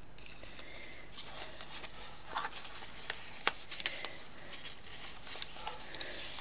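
Paper and card craft pieces being handled and shifted on a cutting mat: light rustling of paper with a few scattered soft clicks and taps.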